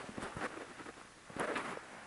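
A screwdriver snugging a rack-ear screw into a metal equipment chassis: faint, scattered small clicks and handling noises, with a slightly louder click about one and a half seconds in.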